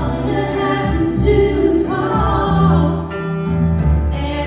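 A woman singing into a microphone while accompanying herself on a grand piano.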